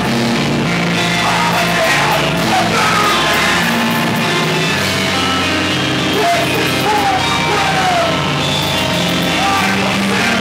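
Hardcore band playing live, the vocalist screaming into a microphone over drums and guitars.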